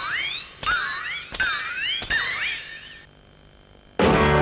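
Cartoon sound effects: four sharp clicks about two-thirds of a second apart, each followed by squeaky, whistle-like tones gliding up and down, which stop about three seconds in.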